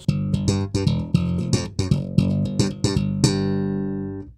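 Human Base Roxy B5 five-string electric bass, its single pickup switched to parallel coil mode, playing a short riff of quick notes with sharp, bright attacks in a slap style, ending on a held note that rings and fades away near the end.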